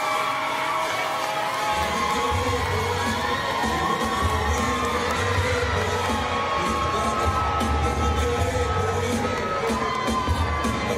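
Arena crowd cheering and shouting over ring-walk music. A heavy bass comes in about two seconds in.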